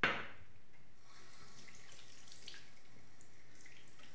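Bathroom tap water running into a sink: a sudden loud gush at the start as it opens, then steady running and splashing.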